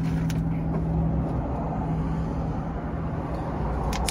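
A parked car's engine idling steadily, heard from inside the cabin as an even low hum.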